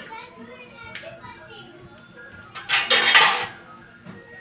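A loud, short burst of clattering noise about three seconds in, over faint background voices and music.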